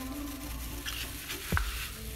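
A metal spoon scraping a creamy white ingredient off into a small glass bowl, with one sharp tap of the spoon on the glass about one and a half seconds in, over a steady background hiss.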